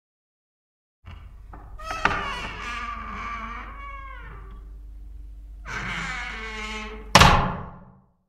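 Sound effects of a TV station ident: after a second of silence, animal-like cartoon calls that bend in pitch over a low hum, ending in a sharp thunk with a falling swoosh about seven seconds in.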